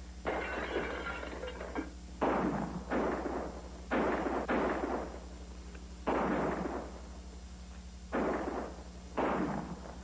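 A volley of about eight gunshots fired at irregular intervals, each crack trailing off in a short echo. A steady low hum from the old film soundtrack runs underneath.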